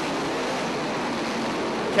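A pack of 358 dirt modified race cars running at speed, their small-block V8 engines blending into a steady, even wash of engine noise.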